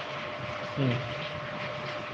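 Steady background hum and hiss with a faint constant tone, under one short spoken word just under a second in.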